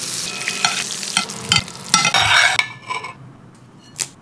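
Butter and yuzu juice sizzling in a hot pan, with a few sharp metal clinks and taps. The sizzle dies down about two-thirds of the way in.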